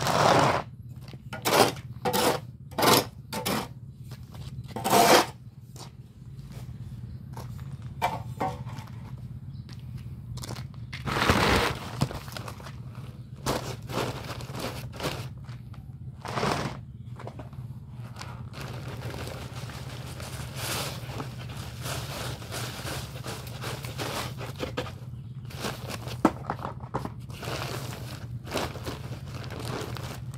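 Lumps of hardened, set cement being pounded with a long-handled bar on a concrete floor: a run of sharp strikes in the first five seconds, a heavier crunch near the middle, then softer scraping and crunching as the broken cement is worked by hand. A steady low hum runs underneath.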